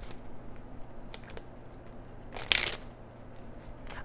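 Tarot cards being handled: a few faint taps and one short papery swish about two and a half seconds in.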